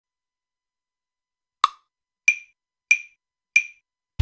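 Four metronome clicks counting in, about two-thirds of a second apart. The first click is lower-pitched than the other three, which marks the downbeat.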